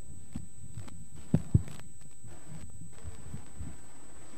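Soft low thumps over a steady hum with a thin high tone, and two sharper knocks close together about a second and a half in.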